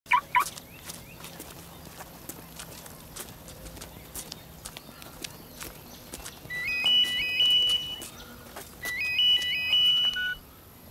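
Electronic phone ringtone ringing twice, each ring a quick run of rising notes lasting about a second and a half, the first starting about six and a half seconds in. Two short chirps at the very start.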